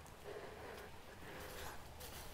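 Quiet background ambience, a faint even hiss with a low rumble, and no distinct sound standing out.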